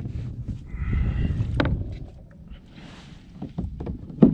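Handling noise of a caught flounder being moved about on a plastic sit-on-top kayak: a low rumble with knocks and scuffs, and one sharp knock about a second and a half in.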